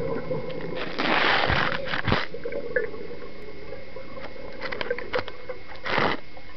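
Underwater sound of a scuba diver breathing through a regulator: a hiss of breath drawn in about a second in, then scattered clicks, with another rush of air and bubbles near the end.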